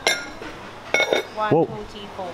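Two sharp, ringing clinks of metal utensils against ceramic condiment bowls, one right at the start and one about a second in.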